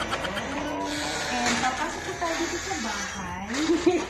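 A person laughing, on and off, over a steady background hiss.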